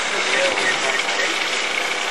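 A voice commentating over a steady drone from the engine of a Mitchell A-10 flying-wing ultralight flying overhead.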